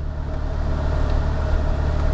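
Car engine idling, heard inside the cabin: a steady low hum with a faint steady whine above it.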